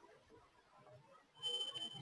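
Faint room tone, then about a second and a half in a steady high-pitched electronic beep starts and holds.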